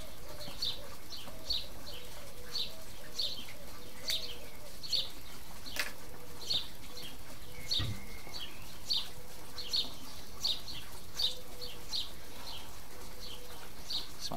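A small bird chirping over and over, short high chirps at about two to three a second.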